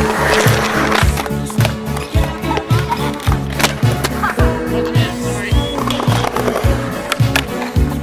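Music with a steady beat over a skateboard rolling on concrete, with sharp clacks of the board popping and landing.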